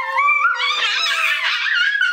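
A young girl's high-pitched squeal, rising sharply at the start and then wavering up and down in pitch.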